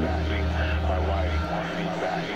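A low, steady drone with a wavering, warbling texture above it. The low note changes about one and a half seconds in.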